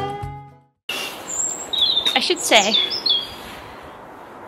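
Background music fading out, then after a short break small birds chirping in short, high notes.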